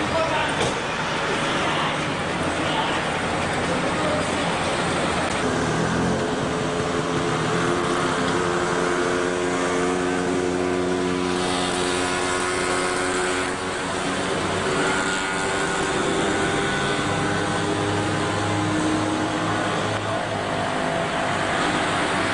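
A motor vehicle's engine running with a steady hum whose pitch shifts slowly, over street noise and voices.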